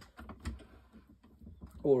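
Faint, irregular clicks and light knocks from a Stanley Max Steel multi-angle bench vice being swivelled and repositioned by hand on its ball joint.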